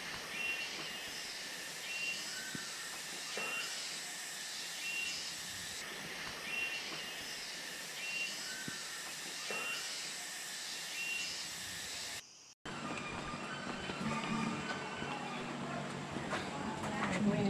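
Rainforest ambience: a steady high hiss of insects with short bird calls repeating about every second and a half. About twelve seconds in it drops out briefly and gives way to a fuller street background.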